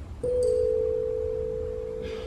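A single bell-like note from a small handheld instrument, struck about a quarter second in and ringing on with a slow fade. A second tone sits just below it, and a brief bright overtone comes with the strike.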